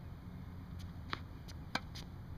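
Two sharp knocks about half a second apart, a tennis ball bouncing on the hard court and then struck by the racquet on a backhand. The racquet hit is the louder of the two. A steady low outdoor rumble runs underneath.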